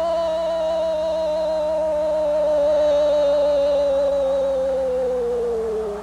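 Brazilian TV football commentator's long, drawn-out "Goooool" shout celebrating a goal, one unbroken held note whose pitch sinks slowly until it breaks off at the end.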